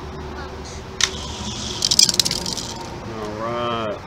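Hot Wheels-style die-cast toy cars released at the starting gate with a sharp click, then clattering and rattling loudly on the orange plastic drag track as they reach the finish about two seconds in. A person's voice follows near the end.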